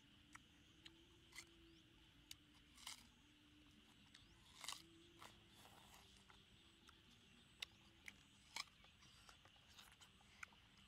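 Small watermelon's rind being bitten and torn off with the teeth and fingers: a dozen or so short, crisp crunches and snaps at irregular intervals, over a faint steady high hiss.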